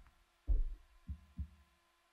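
Three soft, low thumps of handling noise on the microphone, the first about half a second in and the other two close together about a second later, over a faint steady hum.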